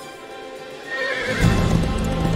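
Film score music, quiet at first, then swelling loud just over a second in. A horse neighs about a second in, and galloping hoofbeats come in under the music.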